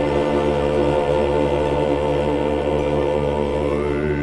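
Choir holding a long, steady closing chord of a Russian folk song, with one voice sliding up in pitch near the end.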